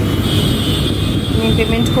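Steady road-traffic rumble with voices in the background. A steady high-pitched tone comes in just after the start and holds on.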